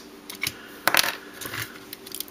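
Lego plastic parts clicking and clacking as a hand-built Lego transforming-robot model is handled and its parts are moved. There are a few sharp clicks, the loudest about a second in.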